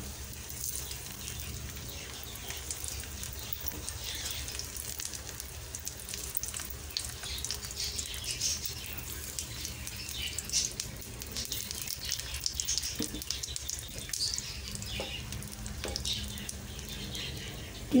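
Eggplant slices shallow-frying in a little oil, sizzling and crackling steadily with many small pops as more slices are added to the pan.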